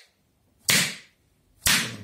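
Latex-gloved palm slapping bare skin on a man's chest and neck in percussive massage: two sharp slaps about a second apart.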